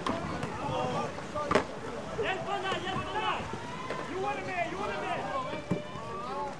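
Untranscribed voices calling out in the background, with a sharp knock about one and a half seconds in and a fainter one near the end.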